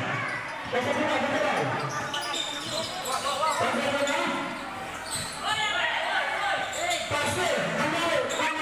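Basketball bouncing on a court during play, mixed with shouting from players and onlookers, echoing in a large covered hall.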